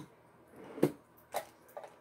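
A few light knocks and clicks of small objects being handled and set down on a table, the loudest a little under a second in, with faint rustling between them.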